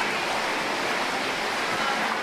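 Water welling up and running steadily from a rock-basin spring into a small indoor creek.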